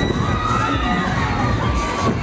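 Riders on a swinging pendulum fairground ride screaming, several high voices at once over a loud crowd din.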